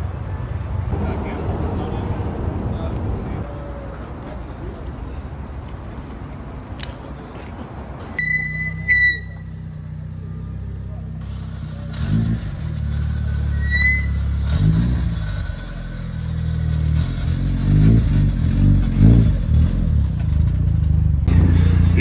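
Mitsubishi Lancer Evolution VI's turbocharged four-cylinder engine running, with the revs rising and falling several times in the second half and growing louder toward the end.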